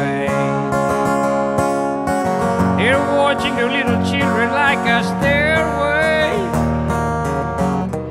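Acoustic guitar strummed steadily. A man's singing voice comes in for a line in the middle.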